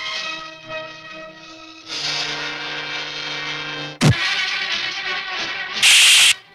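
Background film score under a fight, with a sharp dubbed punch sound effect about four seconds in and a louder hit near the end.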